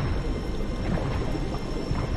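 Muffled underwater film sound: a low, dull rumble with bubbling and no clear highs, under a music score that holds a thin high tone.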